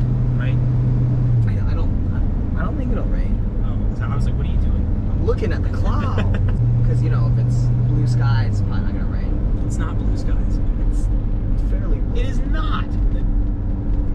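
A 1977 Chevy C10's 350 V8 crate engine and road noise droning steadily, heard from inside the cab while driving. The engine hum drops in pitch about a second and a half in, rises again around six and a half seconds, drops at about eight and a half, and rises near the end. Low talk runs over it.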